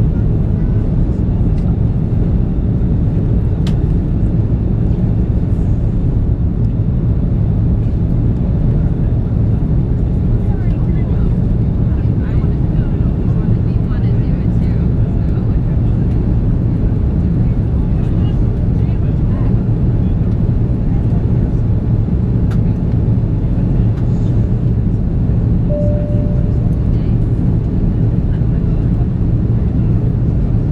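Steady cabin noise of an Airbus A330-343 climbing after takeoff, heard from a window seat over the wing: the Rolls-Royce Trent 700 engines and the airflow make a deep, even rumble. A brief faint tone sounds near the end.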